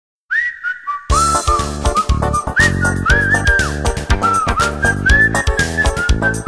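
A whistled melody sliding between notes opens the song alone, and about a second in the band comes in with a steady beat, bass and guitars while the whistling carries the tune on top.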